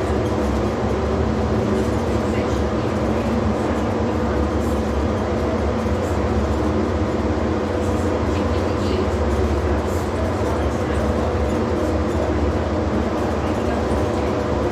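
Rubber-tyred VAL automatic metro train running through a tunnel, heard from inside the front of the car: a steady low rumble with a constant electric hum on top.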